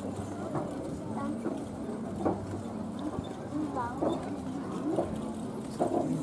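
Hoofbeats of a pair of carriage horses on the move, with a few sharp knocks about a second apart, under background voices talking.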